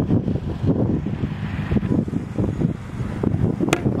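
Wind buffeting the microphone, with one sharp crack near the end as a baseball bat hits a ball off a batting tee.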